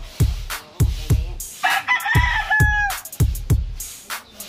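A rooster crows once, a little over a second long, starting about one and a half seconds in. Hip-hop music with a steady kick-drum beat plays under it.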